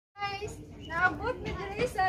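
Speech: a high-pitched voice talking.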